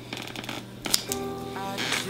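A short crackling rasp of duct tape being handled and pressed on, then background music with a melody of held notes comes in about a second in.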